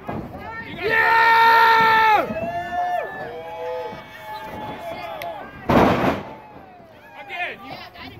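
A long, loud held shout from the ringside crowd about a second in, with voices calling out after it. About six seconds in comes one heavy slam of a wrestler's body hitting the ring mat.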